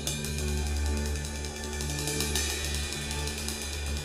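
Live rock band playing softly between spoken dedications: a steady low bass note and held chords, with light cymbal and hi-hat taps on the drum kit.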